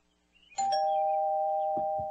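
Two-tone doorbell chime: a higher ding, then a lower dong a moment later. Both ring on together and slowly fade.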